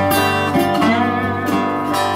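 Acoustic guitar and lap steel slide guitar playing together live, with sustained notes and the slide gliding in pitch about halfway through.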